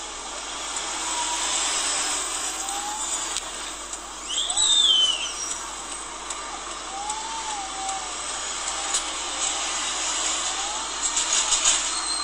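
Street traffic noise from vehicles passing on a town road, heard through a phone's speaker as a steady hiss. A brief high-pitched chirping glide comes about four seconds in.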